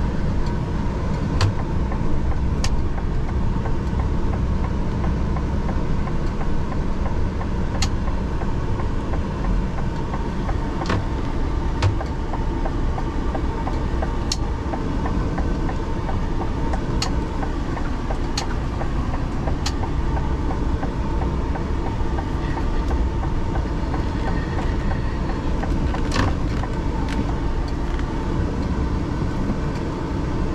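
Lorry engine and road noise heard from inside the cab while driving: a steady low rumble, with scattered sharp clicks and knocks every few seconds.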